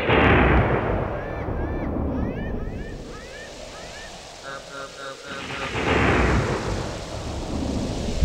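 Thunderstorm sound effect: two heavy rolls of thunder, one at the start and one about six seconds in, over steady rain, with a quick run of short chirps between them.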